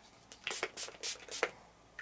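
Perfume atomiser on a bottle of jasmine fragrance being pumped repeatedly: a quick run of about five short hissing sprays within about a second.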